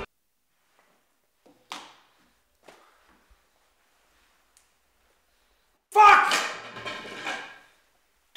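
Quiet room with a couple of faint short knocks, then about six seconds in a man's voice speaks loudly.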